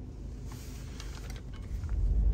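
Faint, steady low rumble of a car driving, heard from inside the cabin.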